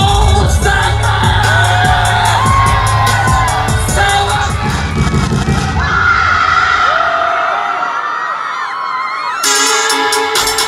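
Live hip-hop concert music over a venue PA, heard from within the crowd: a heavy bass beat with vocals and crowd voices. About six seconds in the bass drops out, leaving a held synth tone and scattered shouts, and near the end a new track starts with a synth chord and a fast clicking beat.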